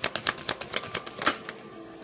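A tarot deck being shuffled by hand: a fast run of crisp card-on-card clicks that thins out about a second and a half in.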